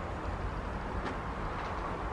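Steady outdoor background noise: a low rumble with a light hiss over it, and a faint tick about a second in.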